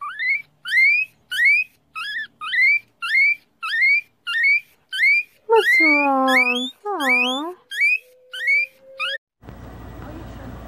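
Guinea pig wheeking: a regular run of short, loud rising whistles, about two a second, with two longer, lower calls about halfway through. The caption has her getting mad when the owner stops singing.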